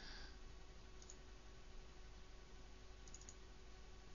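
Near silence: faint room hiss with a few soft computer mouse clicks, about a second in and again around three seconds in.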